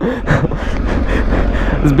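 Kawasaki ZX-10R sportbike's inline-four engine running steadily at low speed, a constant low rumble under the rider's laughter and breathy gasps.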